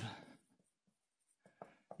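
Near silence with faint strokes of writing on a lecture-hall board, a few small taps about three-quarters of the way through.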